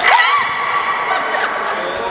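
High-pitched shrieks and whoops from a few voices, a quick burst of rising and falling cries at the start that trails off over the next second, echoing in a large hall.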